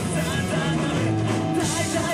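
Live rock band playing loud and steady through the club PA: electric guitars, bass and a drum kit.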